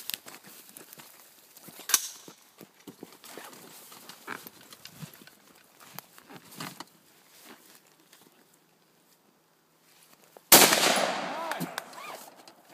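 A single loud rifle shot about ten and a half seconds in, from an AR-15-style rifle fired from the prone position, its report fading over a second or so. Before it come scattered small handling noises and one sharp knock about two seconds in.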